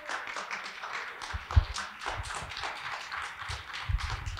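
Audience applauding: a steady patter of many hands clapping, with a few low thumps.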